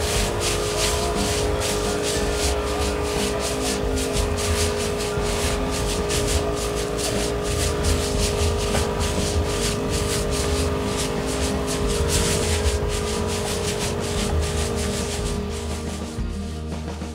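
A 16-litre crop sprayer's pump running with a steady hum while chili seedlings are sprayed through a hose wand, with background music underneath.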